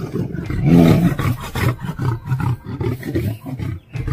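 A lion and a tiger fighting, roaring and snarling: a loud roar just before one second in, then a run of shorter snarls about three a second that die away near the end.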